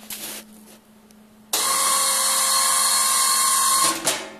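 Electric hydraulic pump of an ATV snow plow running for about two and a half seconds, a steady high whine that switches on abruptly and cuts off just as suddenly, working the plow's hydraulics. A brief noise comes just before it, at the very start.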